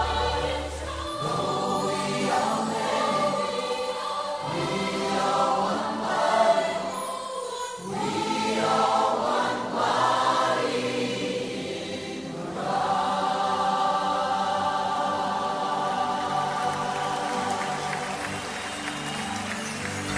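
Choir and congregation singing a worship song with band accompaniment in a live recording; the deep bass drops out about a second in, and the singing settles into longer held notes in the last part.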